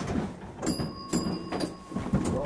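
1898 Brownell streetcar rolling on its track, with sharp metallic clanks about three times and a thin high squeal setting in about halfway through.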